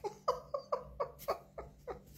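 A woman laughing in a run of short 'ha' bursts, about four a second, each dropping a little in pitch.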